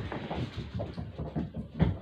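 A puppy's feet scampering across the floor: a quick run of light thumps with one louder knock near the end.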